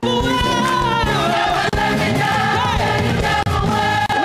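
Live gospel music: a woman sings lead into a microphone over a choir.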